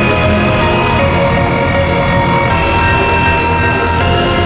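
Black MIDI played through a piano soundfont (Khor Keys 3) with added reverb: a dense wash of hundreds of synthesized piano notes a second stacked into many held pitches at once, steady and loud throughout.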